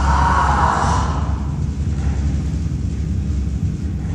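Steady low rumble of background noise, with a brief hissing rush of noise in the first second that fades away.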